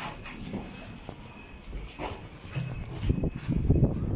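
Footsteps of several people walking on a footbridge floor, the steps loudest and closest together over the last second and a half.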